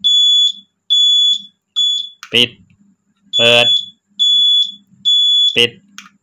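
Motorcycle turn-signal beeper on a Keeway Superlight 200 sounding short, steady high beeps about one a second as the indicators flash. Three beeps stop when the push switch is pressed off, then three more sound after it is switched on again. The owner is unsure whether its flasher relay is faulty, since the signals sometimes won't cancel when the switch is pressed.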